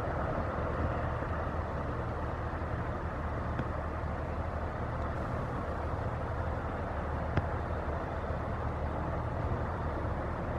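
Steady low diesel rumble from a passing general cargo coaster, with a broad rushing layer over it and one short click about seven seconds in.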